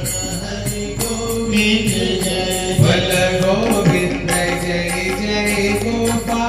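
Devotional kirtan: voices chanting a sung mantra to music, with a steady beat of repeated metallic strikes.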